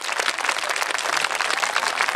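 Crowd applauding steadily, many hands clapping at once.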